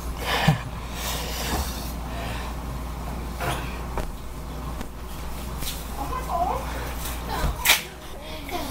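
Scattered short breathy vocal sounds and movement noises over a steady low hum, with a sharp loud burst near the end.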